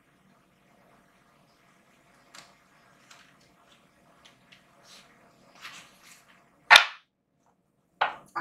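Tarot cards being handled and laid out on a tabletop: a run of light clicks and card rustles starting about two seconds in, then one sharp slap as a card is set down near the end.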